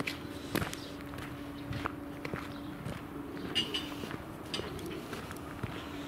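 Footsteps of a person walking on hard outdoor ground, irregular steps about every half second to second. A faint steady hum runs under the first half.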